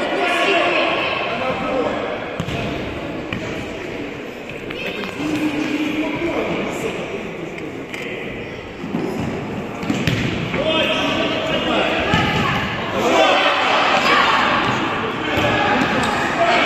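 Futsal ball being kicked and bouncing with sharp thuds on a hard sports-hall floor, mixed with players' and onlookers' shouts that echo in the large hall. The voices are loudest near the start and again in the last few seconds.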